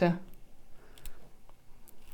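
Fingernails picking at the seal tape on a small plastic eyeshadow compact, giving a few faint clicks, one of them plainer about a second in.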